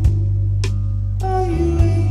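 Live rock band: electric guitar through an amplifier over sustained low notes, with drums struck about every half second or so and cymbal hits.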